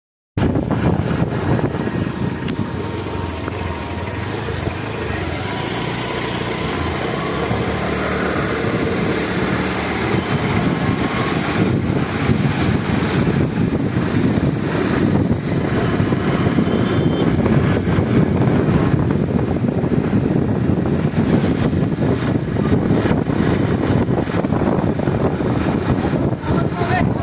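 Motorbike ridden along a road: its engine runs under a steady low rushing noise that grows louder as the ride goes on.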